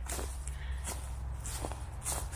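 Footsteps through dry leaf litter and brambly brush, with twigs brushing past.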